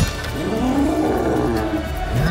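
A sharp impact at the start, then a long cat-like roar that rises and falls in pitch, over film music.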